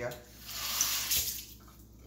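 A kitchen tap running briefly, a hiss of water lasting about a second.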